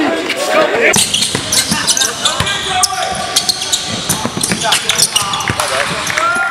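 Live game sound of a pickup basketball game: a basketball bouncing on the court with sharp knocks and slaps, under players' indistinct shouts.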